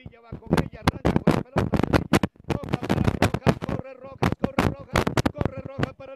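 Fast, loud sports commentary that the transcript did not catch, broken into many sharp clicky syllables.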